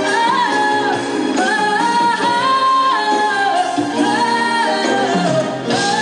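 Female singer singing live into a handheld microphone with band accompaniment, the melody moving in phrases of held notes that step up and down.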